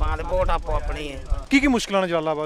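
Men talking in Punjabi, with a low rumble under the voices for about the first second and a half.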